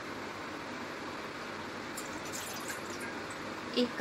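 Water poured from a plastic bottle into a measuring cup, a faint trickle over a steady background hiss.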